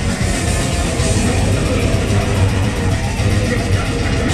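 Hardcore metal band playing live at full volume: electric guitar and drums in a loud, dense wall of sound.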